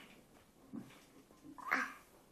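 A toddler's short, high-pitched vocal sound near the end, preceded by a softer low murmur about a second earlier, made while eating a pudding cup with a spoon.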